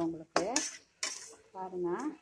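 A metal spatula scraping and clanking against a metal kadai while thick cooked gongura leaves are stirred. There are two sharp scrapes, about a third of a second in and again about a second in.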